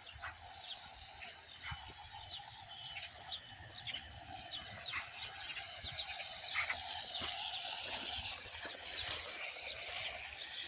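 Small birds chirping here and there, a few short calls each second, over a faint steady outdoor background.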